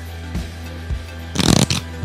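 Background music with a steady beat, and about one and a half seconds in a brief card-shuffling sound effect from Google Search's solitaire game as the cards are dealt onto the table.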